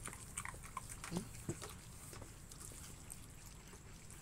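French bulldog making faint, scattered mouth noises as it licks its lips after eating.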